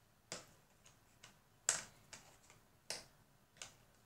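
Several light, sharp clicks and taps at irregular intervals, the loudest a little under two seconds in.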